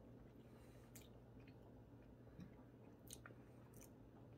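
Faint mouth sounds of a person chewing a bite of cheese, with a few soft clicks, over near-silent room tone.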